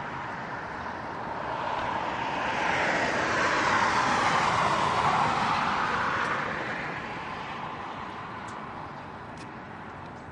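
A vehicle passing by: a broad rush of noise that swells over the first few seconds, is loudest in the middle, and fades away toward the end.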